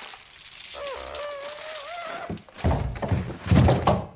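Movie fight-scene sound: a wavering drawn-out tone for about a second and a half, then two heavy thuds near the end.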